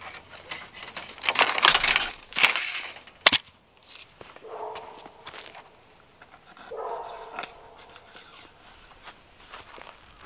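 Steel trellis wire rasping as it is pulled through a wooden post, with a sharp click a little after three seconds. A dog barks in short runs about four and a half and seven seconds in.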